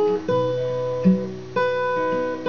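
Acoustic guitar capoed at the fourth fret, picked note by note in a slow arpeggio. A new note starts about every half second and rings on under the next.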